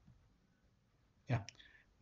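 Near silence for over a second, then a brief spoken "yeah" with a single short click in it, about a second and a half in.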